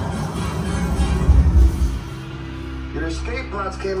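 Simulator ride's soundtrack during the escape pod's crash landing: music over heavy low rumbles for about the first two seconds, then a held chord as the pod comes to rest. A man's voice begins near the end.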